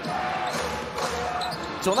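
A basketball being dribbled on a hardwood court, a few sharp bounces about half a second apart, over the steady murmur of an arena crowd.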